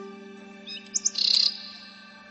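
A small bird chirping briefly with a few quick, high-pitched notes about a second in, over the faint tail of a fading musical drone.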